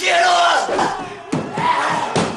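Loud yelling: a long cry that falls in pitch, then another cry starting after about a second and a half.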